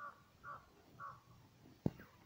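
Three short caws from a bird, about half a second apart, followed near the end by a single sharp knock, the loudest sound.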